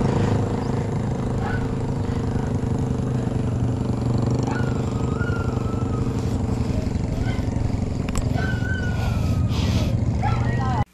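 Wind buffeting the camera microphone and tyre noise on asphalt while a bicycle is ridden along a paved road, with a steady low hum throughout. A few short high chirps come through around the middle and near the end.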